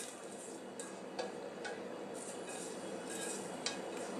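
Silicone spatula scraping cooked spinach out of a stainless steel pot, faint, with a few light clicks against the metal.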